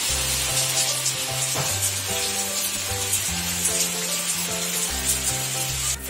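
Steady rain falling on a paved courtyard, an even dense hiss, under background music with a bass line and held notes.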